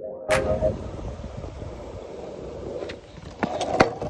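Longboard wheels rolling over concrete pavement, a steady rough rumble, with a few knocks near the end, the loudest a single sharp clack.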